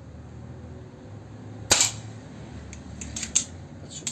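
A single moderated shot from an Artemis air pistol about two seconds in, a sharp crack. It is followed a second or so later by a few lighter mechanical clicks as the pistol is handled.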